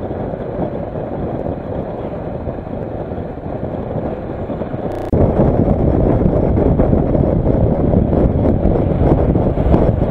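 Wind rushing over the microphone of a motorcycle in motion, a dense steady noise mixed with engine and road noise. It jumps suddenly louder about five seconds in and stays louder at highway speed.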